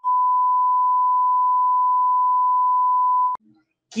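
A steady 1 kHz test-tone beep, the reference tone that goes with TV colour bars, held for about three and a third seconds and then cut off abruptly with a click.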